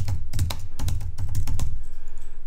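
Typing on a computer keyboard: a quick run of keystroke clicks as a word or two is typed.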